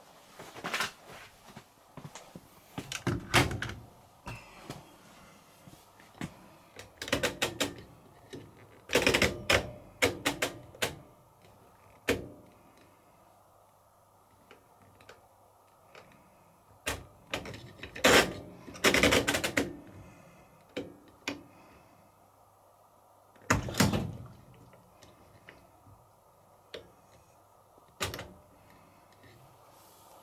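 Clicks and knocks of washing machine controls being set: push buttons pressed in and programme dials turned, in scattered clusters with short quiet gaps between them.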